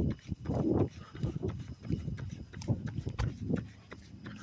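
A runner's footfalls on a paved road with his hard breathing, picked up by a phone held while running: a string of dull thuds with rough breaths between them.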